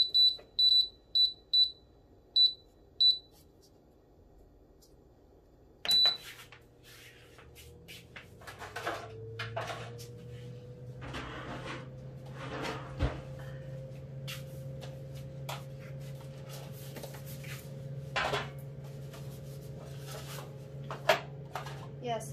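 Electronic beeps from a small oven's control panel as its settings are keyed in: about eight short, high beeps coming further apart over the first three seconds, then one more beep with a click about six seconds in. The oven then starts up and keeps running with a low hum and a steady tone that rises slightly, with occasional clicks and knocks.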